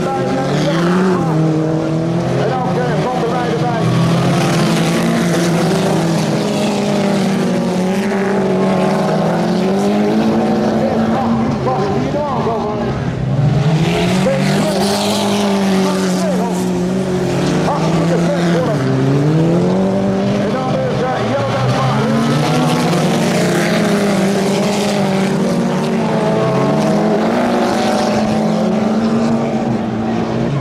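Several autocross race cars running hard on a dirt track, their engines revving up and dropping back again and again through gear changes and corners, with more than one engine heard at once.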